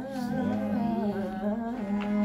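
A man singing a wordless, wavering melodic line in ghazal style, accompanied by a harmonium holding a steady drone note beneath it.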